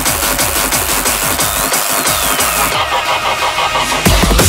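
Hard drum and bass track in a breakdown: the deep bass drops out over the second half while a tone sweeps downward, building toward the next drop.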